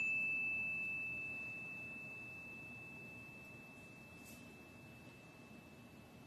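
A small hand chime, struck once with a mallet, ringing on a single high, pure tone that slowly fades away.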